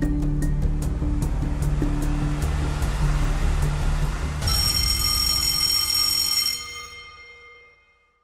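Game-show countdown music with a low pulsing bass and a fast, regular ticking. About four and a half seconds in it gives way to a bright ringing time-up chime that fades away over the last two seconds.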